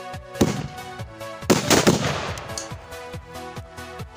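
Sutli bomb firecrackers going off beneath a small LPG cylinder: one bang about half a second in, then a louder cluster of bangs about a second and a half in. Background music with a steady beat runs underneath.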